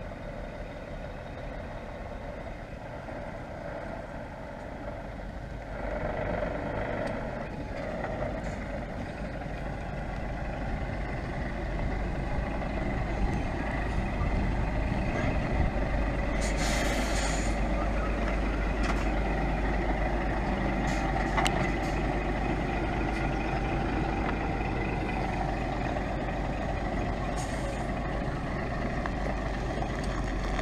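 Diesel engine of a Scania articulated lorry running as it drives and manoeuvres close by, getting louder from about six seconds in. A little past halfway there is a short hiss of air from the lorry's air brakes.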